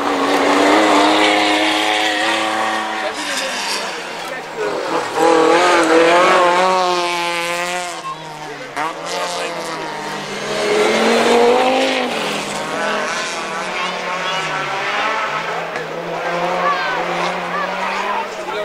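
Rally cars at speed on a gravel stage, one after another, engines revving high and dropping through gear changes. The engine note swells loudest about five seconds in and again around eleven seconds.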